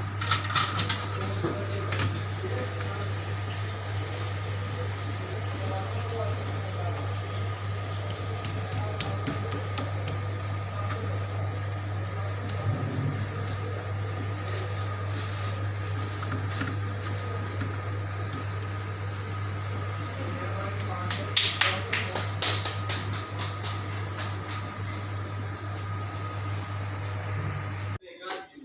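Steady low machine hum with a faint high steady tone, broken by brief clattering clicks about a second in and again between about 21 and 23 seconds in.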